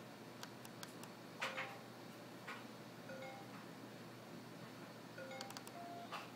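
Faint scattered clicks and pops, the loudest about one and a half seconds in, with several brief beep-like tones at different pitches, from audio plugs being pulled and pushed back into a computer.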